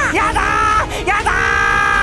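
A man's voice speaks a short line, then a little past halfway breaks into a long, held yell of 'yadaaaa' ('no way!'), with music underneath.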